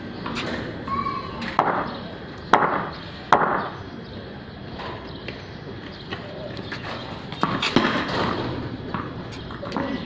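A few sharp knocks of a cricket ball on bat and tiled paving: two loud ones close together about two and a half and three and a half seconds in, and another near eight seconds.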